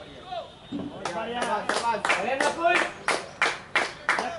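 Men's voices calling out on a cricket field, with a quick, uneven run of sharp hand claps starting about a second in.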